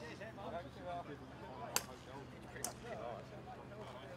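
Two sharp clicks of golf balls being struck by clubs, a louder one near the middle and a weaker one about a second later, over indistinct background voices.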